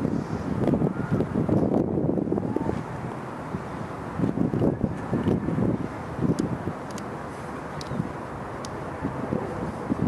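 Wind buffeting the camera's microphone: an irregular low rumble that swells and fades in gusts.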